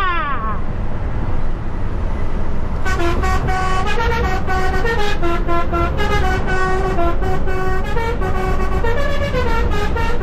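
A lorry's musical air horns playing a multi-note tune of steady notes that step up and down in pitch. It starts about three seconds in and stops just before the end, over the cab's steady engine and road noise.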